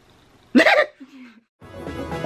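A short, loud burst of laughter about half a second in, then a cut to silence and background music starting near the end.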